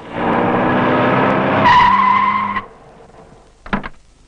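A car's engine runs hard with its tyres skidding. A high squeal joins about a second and a half in, and the whole sound cuts off suddenly as the car stops. A short, sharp sound follows near the end.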